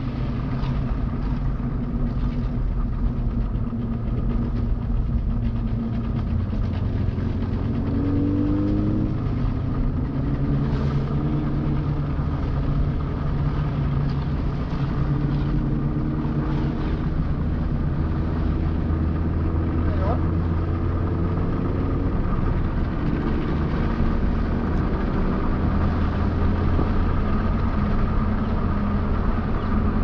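Car engine and tyre noise heard from inside a moving car's cabin, a steady rumble throughout. The engine note rises and falls slightly as the car speeds up and slows, with a rising rev about eight seconds in.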